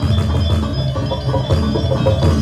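Balinese gamelan music: ringing metallophone tones over low, sustained notes in a steady repeating rhythm.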